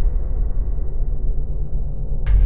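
Deep, steady rumble of a logo-intro sound effect, the hiss above it slowly dying away after an opening hit.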